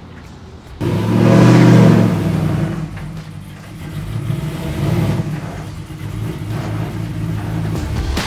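Supercharged LS-swapped V8 of a lifted 1987 Chevy K5 Blazer revving up suddenly about a second in, then settling back toward idle, with a second smaller rev around five seconds in.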